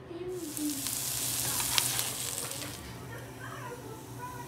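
Food sizzling in a hot pan, with crackles. The sizzle starts suddenly about a third of a second in and fades out before the end.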